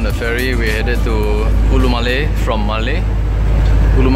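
A person talking over a steady, deep rumble.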